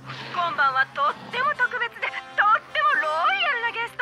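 A woman speaking Japanese, a dubbed cartoon line, over background music with a steady low note.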